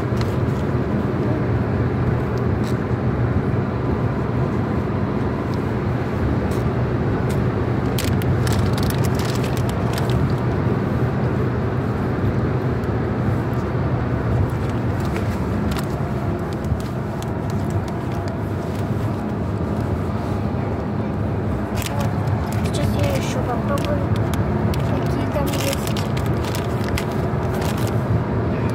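Steady low drone of a moving car heard from inside the cabin: engine and road noise. Short crinkles of a plastic candy bag being handled come around a third of the way in and again near the end.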